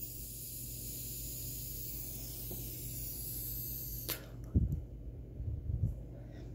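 A long draw on a vape pen, air hissing steadily through the cartridge for about four seconds, then a few low puffs as the vapour is breathed out. The hiss shows the repaired cartridge, its pulled-out wire rethreaded, is firing again.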